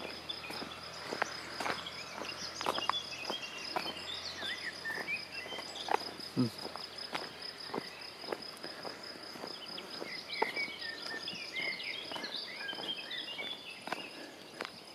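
Footsteps walking on a paved lane, about two steps a second, with small birds singing in bursts of quick chirps, thickest in the first half and again near the end.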